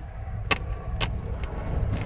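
A painting tool tapping and dabbing on a sketchbook page: four sharp taps about half a second apart, over a steady low rumble.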